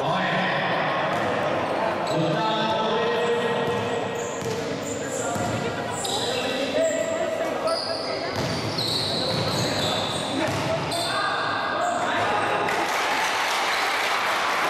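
Indoor basketball game in an echoing gym: a basketball bouncing on the wooden court, sneakers squeaking, and players and onlookers calling out.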